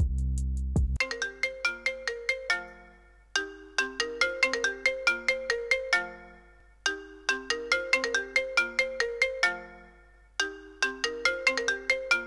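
Smartphone ringtone ringing: a quick, bright run of notes repeated as a short phrase about every three and a half seconds, starting about a second in, for an incoming call.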